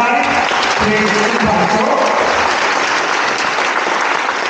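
Audience applauding steadily, with a voice heard over the first second or so.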